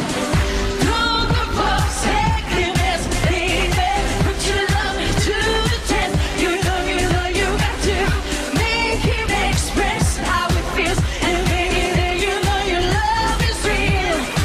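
A woman singing a pop song live into a handheld microphone over a backing track with a steady beat.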